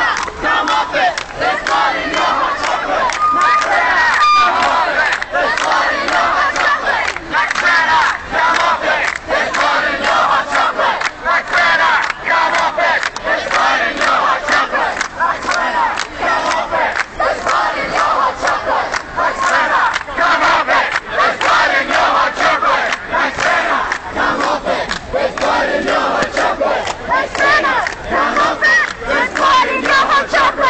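Protest crowd shouting, many raised voices overlapping continuously with no single clear speaker.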